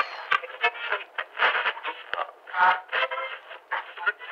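Tinny, radio-like filtered audio in short irregular bursts, broken by sharp clicks, with a few brief pitched stretches.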